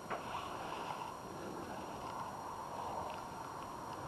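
Quiet, steady outdoor background noise, an even low hiss, with a faint click right at the start.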